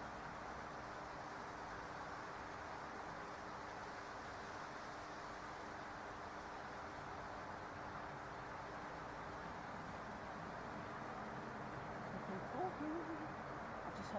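Faint steady night-time hiss with a low hum, and a short, faint croaking call near the end, which is called a horrible croaking noise.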